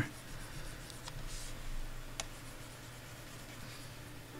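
Faint scratching and tapping of a pen stylus on a graphics tablet, with two faint clicks about a second apart, over a low steady hum.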